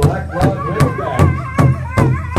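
Powwow drum group singing in high, wavering voices over a large shared powwow drum struck in unison by several drummers, a steady beat of about two and a half strokes a second.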